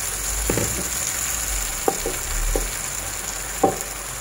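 Sliced apples sizzling in a hot pan of melted butter and brown sugar, a steady frying hiss. A few short knocks sound over it, the loudest near the end.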